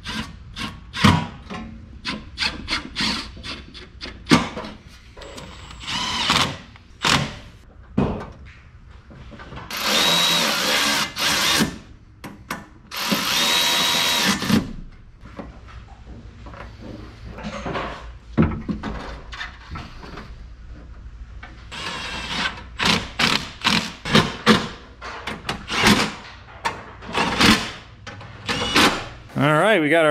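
Cordless drill running in two bursts of about two seconds each, its motor whining as it spins up, with frequent clinks and knocks of hand tools before, between and after.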